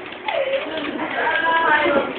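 A young child's wordless, drawn-out squealing that slides up and down in pitch.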